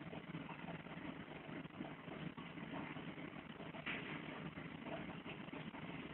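Aquarium aeration running: a steady motor hum under a continuous bubbling hiss, with a few faint ticks.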